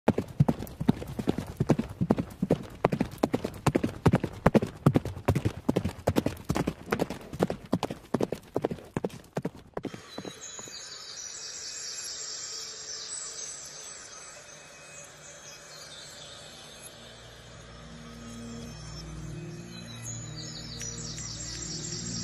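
Horse hooves clip-clopping in a steady rhythm, several strikes a second, cutting off suddenly about ten seconds in. Quiet music then comes in and slowly grows louder.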